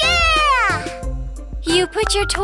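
Children's song: a high cartoon child's voice sings one long, falling "Yeah" over a backing track with a steady bass.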